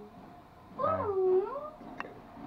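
Pomeranian puppy whining: one drawn-out, wavering whine about a second long starting a little before the middle, dipping and rising in pitch and settling on a lower held note.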